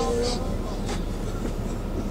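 Steady low rumble of a moving coach's engine and road noise heard inside the passenger cabin. A man's held chanted note of the prayer fades out at the very start.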